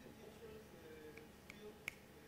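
Near-quiet hall room tone with faint murmuring voices, broken near the end by three short sharp clicks, the last the loudest.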